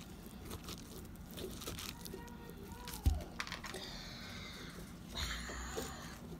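A hand scooping the stringy pulp and seeds out of a hollow pumpkin, with quiet wet tearing and rustling as the fibres pull away, and a single thump about three seconds in.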